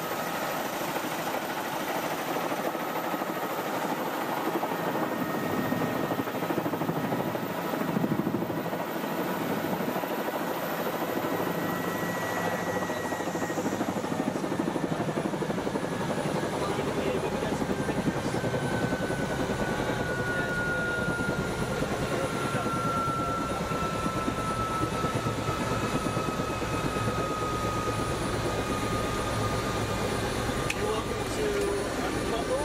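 Helicopter rotor and engine running, heard from inside the cabin, as the aircraft sets down and sits on the ground. A steady whine runs through it and slowly falls in pitch in the second half.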